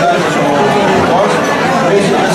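Many people talking at once in a large room: steady crowd chatter.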